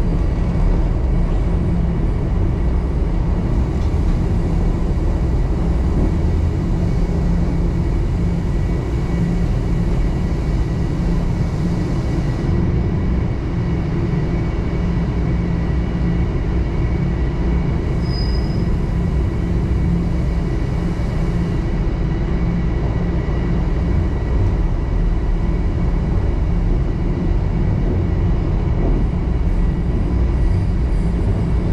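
Toronto subway train running through a tunnel, heard from inside the car: a steady, loud rumble of wheels on rail and traction motors, with a faint steady whine. A brief high squeak comes about eighteen seconds in.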